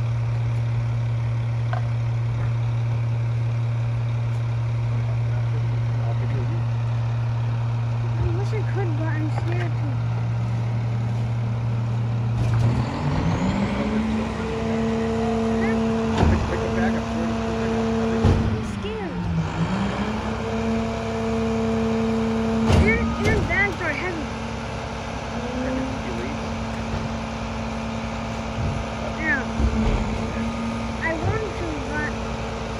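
Rear-loader garbage truck's diesel engine idling with a steady hum, then revving up about twelve seconds in and holding a higher speed as the packer's hydraulics work, with one brief dip and recovery. Several loud bangs of bins and yard waste being tipped into the hopper are heard over it.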